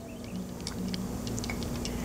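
Faint, scattered light clicks and taps of metal parts as a small gear shaft is set into the aluminium final-drive gear case of a Honda Ruckus, over a steady low hum.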